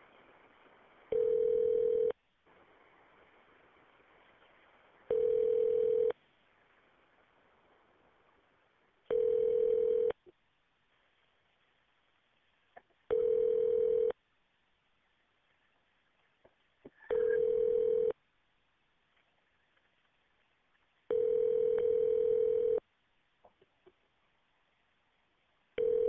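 Telephone ringback tone over a phone line: a steady tone about a second long, repeating every four seconds, as a transferred call rings through to the other end waiting to be answered. One ring near the end runs a little longer, and faint line hiss fills the first gaps.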